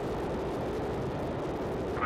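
Soyuz rocket's kerosene-fuelled first-stage engines (four strap-on boosters and the core engine) firing on the pad just after ignition, building to liftoff thrust: a steady, deep rushing noise.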